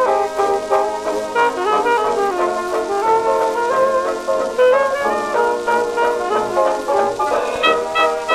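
A 1927 hot jazz dance band recording played from a 78 rpm disc: trumpets and reeds play together over a steady dance beat. The sound is thin and narrow, with almost no bass, as is typical of a 1920s 78.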